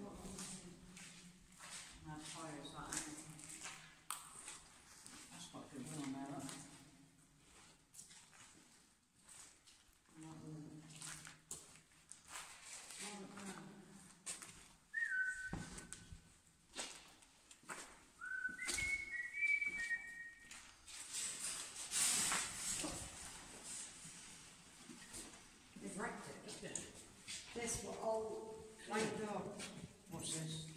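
Muffled, indistinct talk with scattered scuffs and knocks. About halfway through come a few short, high, whistled notes, each held briefly and stepping between pitches.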